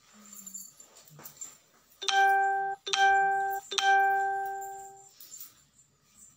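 Three ringing chime tones of one pitch, under a second apart, each starting sharply; the last rings on and fades out over about a second.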